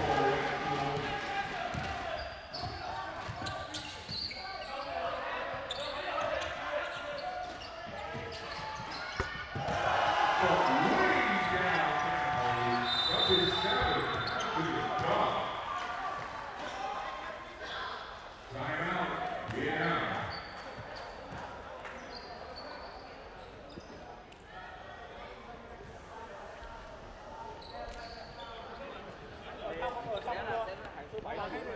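Basketball game sound in an indoor arena: the ball bouncing on the hardwood court under players' and spectators' voices, which are loudest about a third of the way through. A brief high whistle sounds shortly before the middle.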